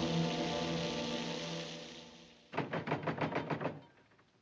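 Orchestral film score holding sustained chords and fading away, then a fist pounding rapidly on a wooden door, about a dozen quick knocks in a little over a second.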